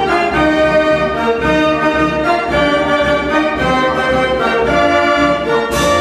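Verbeeck concert organ, a Belgian dance organ with pipes, playing a tune with held pipe notes over a steady pulsing bass.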